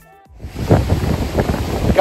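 The last faint notes of a music track, then about half a second in, loud gusting wind on the microphone over rough surf breaking against rocks.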